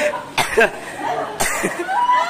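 A person coughing, two sharp coughs about half a second in and again about a second and a half in, with a few voice sounds between them.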